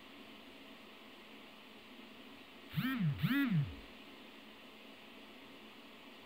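Steady hiss of an old recording, broken about three seconds in by two short voiced calls in quick succession, each rising and then falling in pitch.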